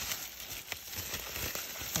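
Plastic bubble wrap crinkling and rustling as a notebook is slid out of it, with a few light clicks.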